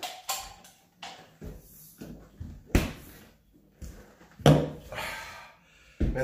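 Handling sounds at a stainless French-door refrigerator as it is searched and its doors are shut: a few scattered knocks and clicks, the sharpest one about halfway through.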